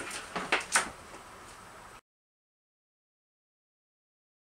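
A few quick clicks and clatters of a string of plastic Christmas light bulbs being handled over a plastic tote, then the sound cuts off suddenly about two seconds in.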